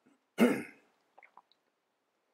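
A man clears his throat once, briefly, about half a second in, followed by a few faint clicks.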